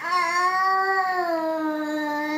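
An overtired baby's long whining cry, fussing against sleep: one drawn-out wail that starts abruptly, holds a steady pitch and sinks slightly as it goes.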